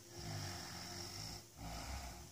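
A person breathing close to the microphone: one long breath, then a second starting about a second and a half in.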